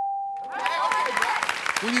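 A game-show score-reveal ding rings out and fades, and about half a second in studio audience applause and cheering take over.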